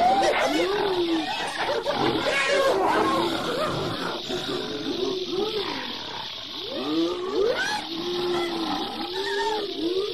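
A dense chorus of many overlapping animal-like cries, each a short call that rises and falls in pitch, going on without a break.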